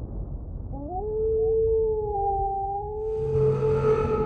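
A long, howl-like animal cry from a sound effect over a low rumble: it glides up about a second in, then holds one steady pitch with a fainter tone above it. Near the end, hiss and a lower hum join in.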